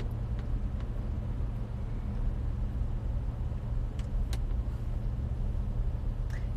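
Steady low rumble of a stationary car's idling engine, heard from inside the cabin, with two faint clicks about four seconds in.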